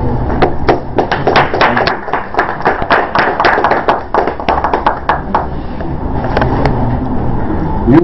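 Audience applauding, a dense patter of claps that dies away after about five seconds, over a low steady hum.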